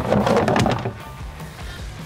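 Plastic lid of a pond drum filter being handled, with clatter and a few knocks in the first second, then dying down, over quiet background music.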